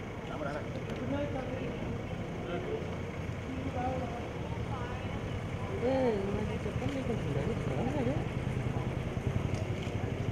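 Background chatter of several people talking over each other, with no clear words, above a steady low rumble that grows a little louder about six seconds in.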